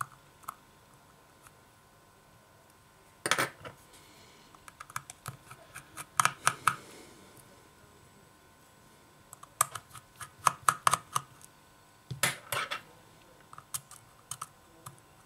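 Small metal clicks and taps in irregular clusters from tweezers and a screwdriver working the tiny screws and brackets inside an opened iPhone 6.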